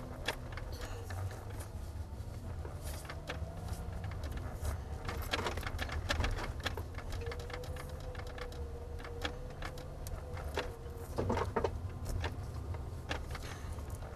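Lexus GX470's V8 engine running at low speed as the SUV creeps through about a foot of snow, heard from inside the cabin as a low steady rumble. Scattered knocks and clicks run through it.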